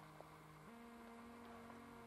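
Near silence with a faint steady electrical hum, which steps up slightly in pitch under a second in.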